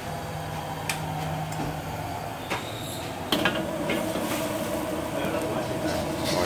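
Steady background din with a low hum early on and a few sharp clicks or clinks. The loudest click comes about three seconds in, and the background changes after it.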